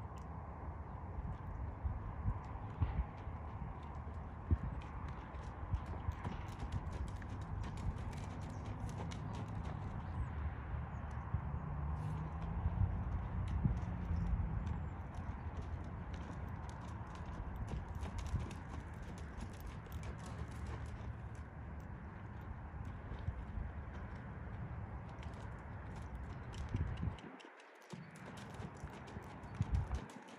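Hoofbeats of a horse loping on a soft sand-and-dirt arena: a running series of dull thuds over a steady low rumble.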